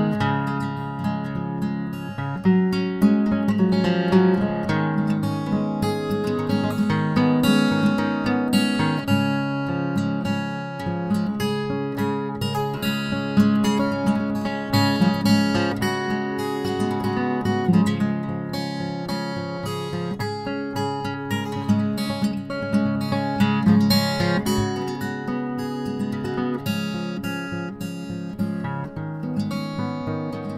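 Acoustic guitar music, with a steady stream of plucked notes.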